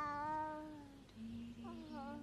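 Baby crying in a cradle. One long wail rises and then slowly falls away, and a shorter falling cry follows near the end.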